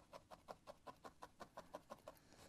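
A felting needle stabbing repeatedly into wool on a felting mat, a fast, faint run of soft clicks at about seven a second.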